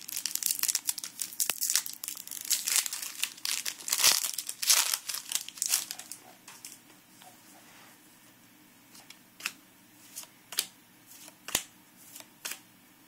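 Foil trading-card booster pack being torn open and crinkled by hand for about the first six seconds. After that it goes quiet, with a few sharp clicks as the cards are handled.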